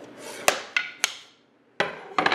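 Parts being handled on a workbench: three sharp knocks about a quarter second apart over a rustle of handling, then a quick cluster of clicks and taps near the end.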